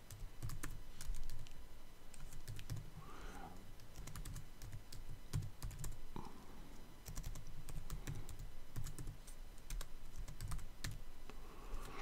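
Typing on a computer keyboard: a run of light key clicks at an uneven pace, with short pauses between bursts.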